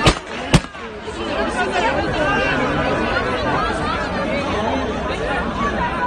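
Two gunshots about half a second apart, then a dense crowd of many voices shouting and talking at once.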